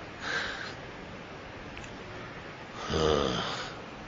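A man breathing audibly into the microphone during a pause in his speech. There is a short breath about half a second in, then a longer, throaty breath with a low buzz to it around three seconds in.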